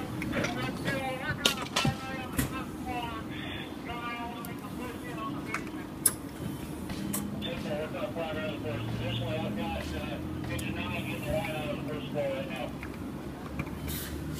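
Indistinct voices, unclear enough that no words were picked out, over a steady low hum, with a sharp knock about six seconds in.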